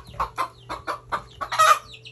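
A hen clucking in a quick run of short clucks, about four or five a second, with one louder cluck near the end.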